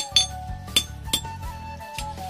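Hand hammer striking iron held in tongs on a small anvil, about five sharp ringing clinks at an uneven pace, over background music with a wavering melody.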